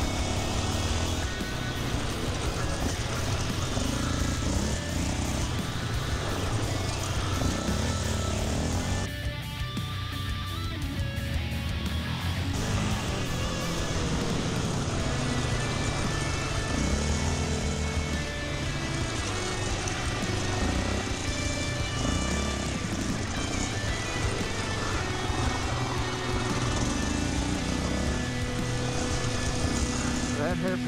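Off-road quad's engine revving up and down as it laps a dirt track, easing off briefly around ten seconds in before pulling again.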